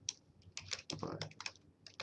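Typing on a computer keyboard: a quick, irregular run of key clicks.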